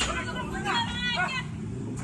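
Voices talking over the steady low hum of street traffic and idling vehicles.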